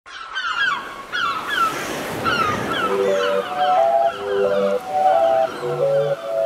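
Birds giving repeated short falling calls over a brief swell of noise. About three seconds in, a soft electronic melody of held notes and a low bass tone comes in beneath them.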